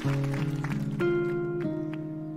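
Guitar playing a slow line of plucked notes, each ringing on as the next one comes in, a new note about every half second.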